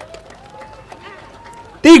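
A pause in a man's speech over a microphone, with only faint background sound. Near the end he speaks again loudly.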